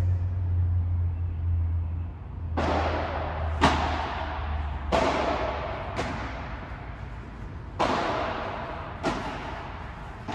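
Padel ball hit with rackets and bouncing in a rally: six sharp hits, one every one to two seconds, each ringing out in a large echoing dome. A low hum fades out in the first two seconds.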